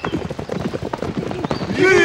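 Horses' hooves clip-clopping on a dirt track, mixed with many running footsteps. Near the end a horse whinnies, a loud wavering call that falls in pitch.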